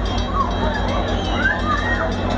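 Steady low rumble from an Amtrak passenger train alongside the platform, with the chatter of a crowd of people over it.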